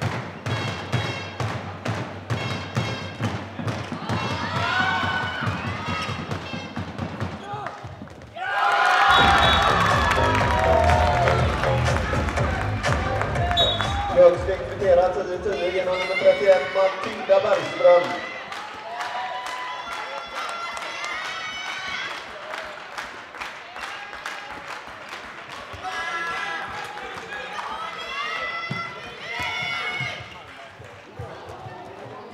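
A handball bouncing and thudding on a sports-hall floor during play, with players calling out. After about eight seconds a louder stretch with music and voices takes over for several seconds before the game sounds return.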